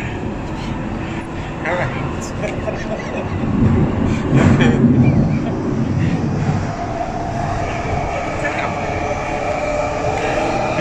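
London Underground train running, heard from inside the carriage as a loud rumble that swells for a couple of seconds about four seconds in. From about seven seconds a steady two-note whine rises out of the noise and holds.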